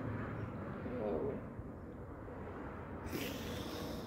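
Quiet outdoor background with a faint, brief vocal hum from a woman about a second in, and a short hiss near the end.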